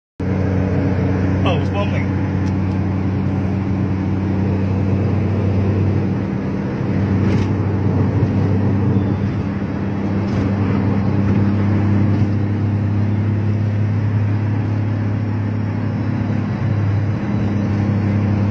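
Steady drone of a car travelling at highway speed, heard from inside the cabin: a low engine hum with road and wind noise, and a brief voice about a second and a half in.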